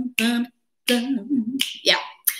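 A woman speaking in short phrases, with a brief pause about half a second in and a short sharp sound just before she says "yeah".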